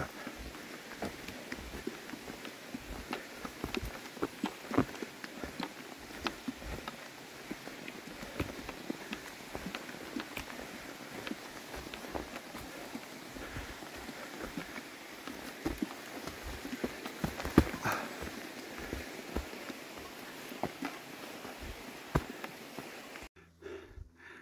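A hiker's footsteps on a dirt, leaf and root forest trail: a stream of irregular steps and scuffs, a couple each second, over a steady hiss. The sound drops out suddenly shortly before the end.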